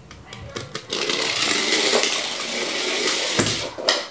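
Battery-powered toy go-kart's small motor whirring as it drives itself across the floor after a Ranger key is put in, with a knock near the end, then cutting off suddenly.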